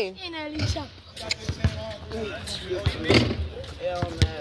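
Basketball dribbled on an outdoor hard court: a string of irregularly spaced bounces, with players' voices in the background.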